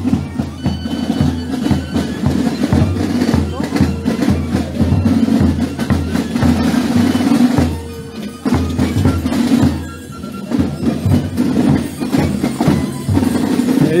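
Carnival drum band of a Gilles society playing a steady marching beat, with snare drums and a bass drum, amid crowd chatter. The drumming drops briefly twice in the middle.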